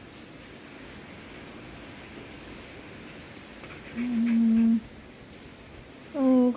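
A dog gives one low, steady whine lasting just under a second, about four seconds in, over a steady hiss of heavy rain. The dog is restless because the rain keeps it from going out.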